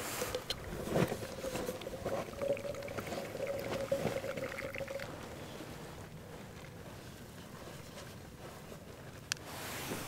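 Hand-held plunger press being pushed down into a mug: a steady whistling hiss as air and liquid are forced through the filter, which stops about five seconds in. A single sharp click comes near the end.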